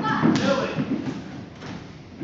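Karate sparring on a wooden dojo floor: two sharp thuds from strikes and stamping feet in the first half-second, then fainter taps, with voices shouting over them.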